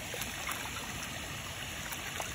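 Water pouring and trickling from a small clear plastic container into a pond, with a few faint splashes and ticks.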